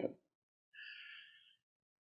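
Near silence, with one faint, short breath about a second in.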